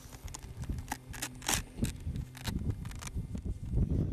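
Irregular clicks and light taps from a crashed foam-and-plastic RC flying-wing airplane being handled and turned over in the hands, over a low rumble.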